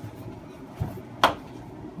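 Quiet handling of a metal spatula working quick-setting dental stone up around a putty mount, with one short sharp tap a little past a second in.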